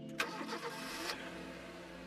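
A car engine starting: a sudden burst about a fifth of a second in that drops back to a quieter running sound after about a second, over soft steady background music.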